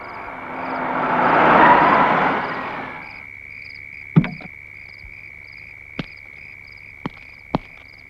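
Night ambience of crickets and frogs: a steady high trill with short chirps repeating over it. A whoosh swells and fades over the first three seconds, and a few sharp clicks come later.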